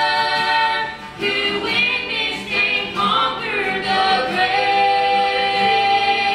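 A man and two women singing a gospel song in close harmony, with long held notes, over a strummed acoustic guitar.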